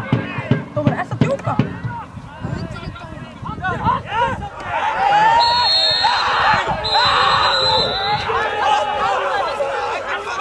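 Open-air football pitch: players shouting, with several sharp ball-kick thuds in the first couple of seconds. A referee's whistle then blows twice, each blast about a second long, as play is stopped with a player down.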